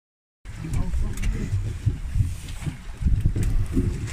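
Uneven low rumble of wind on the microphone and a boat at sea, with a few faint clicks; it starts about half a second in.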